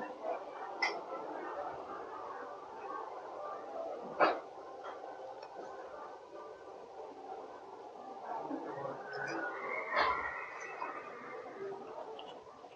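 Quiet eating sounds: a spoon clicking against the bowl a few times, sharpest about four seconds in, and close mouth sounds of chewing, over a faint background murmur.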